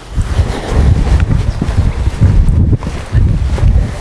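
Wind buffeting the camera microphone: a loud, gusty low rumble that rises and falls unevenly.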